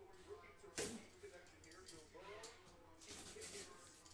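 Cardboard shipping case being handled and opened: a sharp knock about a second in, then a short scraping rustle of cardboard near the three-second mark, all faint.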